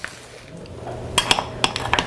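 Tableware clinking: a few light clinks of dishes and cutlery in the second half, over a low room hum.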